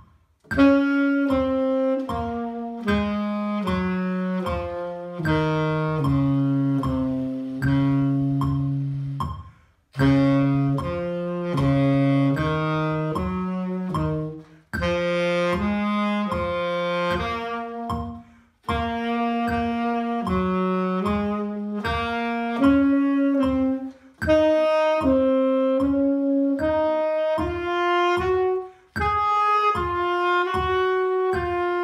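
Tenor saxophone playing a range-extension exercise in phrases of steady, separate notes with short breaks between phrases. Underneath runs a steady low beat, as from a play-along backing track.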